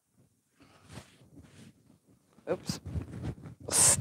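Quilt top being handled against a design wall: quiet for the first couple of seconds, then soft fabric rustling, and a short loud swish of noise near the end.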